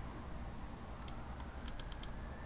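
A handful of quick computer keyboard keystrokes, about five sharp clicks in the second half, over a faint steady low hum.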